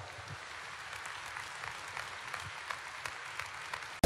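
Steady, fairly quiet applause from a seated audience clapping after a rally speech.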